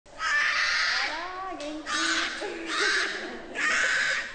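Two-month-old Asian black bear cubs crying, about four hoarse, rasping cries in a row.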